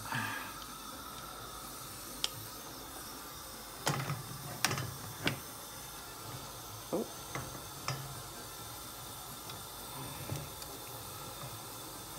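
Water boiling in a shallow pan on a gas hob with a steady hiss, while a large crab is pushed down into it, its shell and legs clicking and knocking against the pan a few times, mostly in the middle part.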